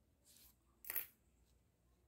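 Two brief rustles of grosgrain ribbon being handled as a needle and thread are worked through it in a hand-basting stitch; the second rustle, just before a second in, is louder and sharper.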